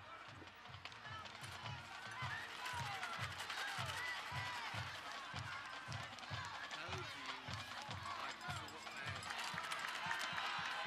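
A steady low bass-drum beat, about two beats a second, under the chatter of a stadium crowd.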